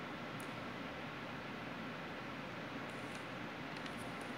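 Steady low hiss of room tone, with a couple of faint light clicks as the steelbook case is handled.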